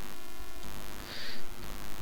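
Steady hiss and hum from the narration microphone, with a short patch of brighter hiss just after a second in.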